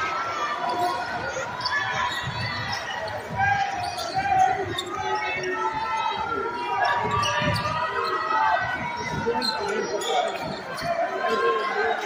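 Basketball dribbled on a hardwood gym floor, repeated low bounces carrying in a large hall, over steady crowd voices and shouts.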